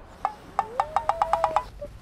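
Comic sound effect laid over the scene: a run of about ten quick wooden-sounding clicks that come faster and faster, over a thin tone that rises and then holds, cutting off near the end.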